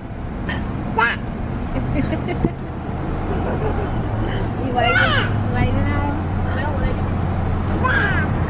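Steady road and engine noise of a moving vehicle heard from inside, growing louder over the first few seconds as it picks up speed. Brief voices call out about a second in and again around the middle.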